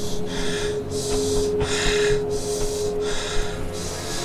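A man breathing heavily, about four loud breaths one after another, over a sustained low note of background music.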